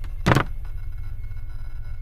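A brief noise about a third of a second in, an animation sound effect of the bathroom mirror being pulled away from the wall, followed by a steady low rumble.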